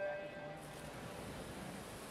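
Electronic starting beep for a swimming race: a steady tone that cuts off about half a second in. It is followed by the splashing of swimmers diving in and the noise of the pool hall.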